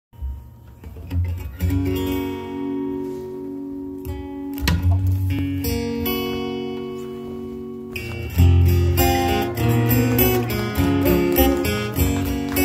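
Steel-string acoustic guitar played live: a few chords strummed and left to ring, then, about eight seconds in, a steady strummed rhythm begins.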